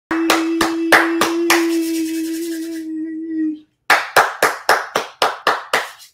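A person clapping their hands in a quick even rhythm, about three to four claps a second. The first few claps come over a long steady held note that stops about three and a half seconds in; after a brief pause comes a second run of about eight claps.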